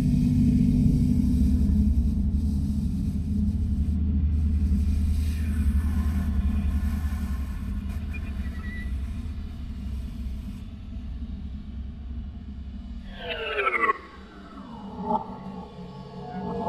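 Contemporary ensemble music with live electronics: a low, steady drone that slowly fades. Near the end, a cluster of steep downward pitch glides, after which the drone stops abruptly and a few quieter sliding tones follow.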